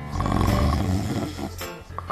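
Background music with a loud human snore over it, lasting about a second and a half from the start.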